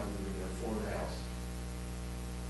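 Steady low electrical mains hum in the recording, with faint, indistinct talk from off-microphone voices about half a second to a second in.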